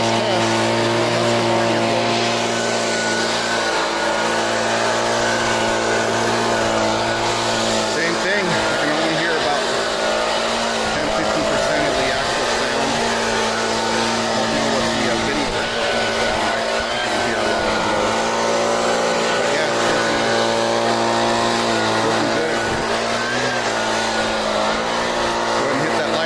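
Handheld gas leaf blower's small two-stroke engine running steadily at speed, its pitch wavering slightly as air blows from the nozzle.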